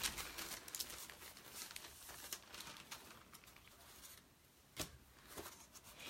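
Faint crinkling and rustling of paper-craft supplies being handled on a table, with scattered light clicks and taps that thin out in the second half.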